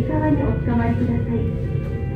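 A woman's voice over background music from the ropeway car's announcement speaker, with a steady low hum underneath.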